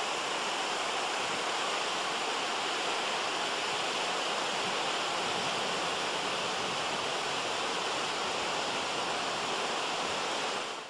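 Ocean surf breaking on a beach: a steady, even rush of waves.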